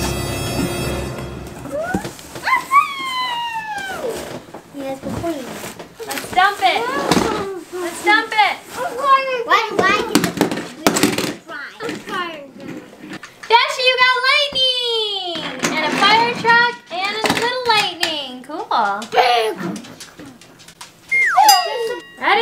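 Young children's excited voices, high squeals and exclamations without clear words, with a few knocks in the middle. A short musical jingle fades out about a second in.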